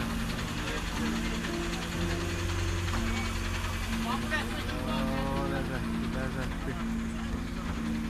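A man talking over a steady low hum, with music underneath.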